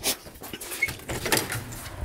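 A few sharp clicks and knocks of footsteps and a door being opened, with handling noise from a moving handheld camera.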